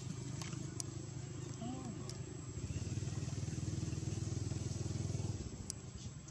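A motor engine running steadily, growing louder about halfway through, then dropping off sharply shortly before the end, with a few faint clicks.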